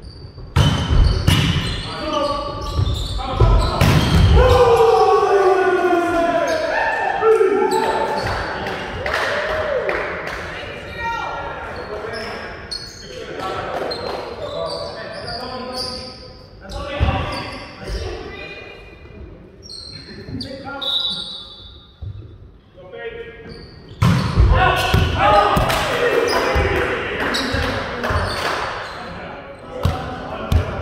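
Volleyball being played in a large gymnasium: sharp ball hits and bounces ring round the hall. Players shout and call to each other, loudest near the start and again later on.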